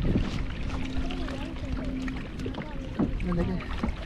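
Lake water lapping and splashing against a kayak's outrigger hull close to the microphone, with small irregular splashes and some wind on the microphone.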